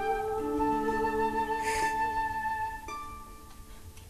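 Medieval ensemble of harps, cittern and hurdy-gurdy playing the end of a song phrase: long held notes over plucked strings, breaking off about three seconds in and leaving it much quieter.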